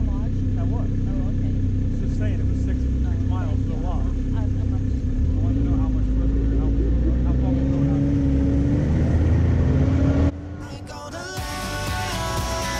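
Snowmobile engines idling side by side, their pitch climbing slowly from about halfway as the throttle is eased open. Near the end the engine sound cuts off and music begins.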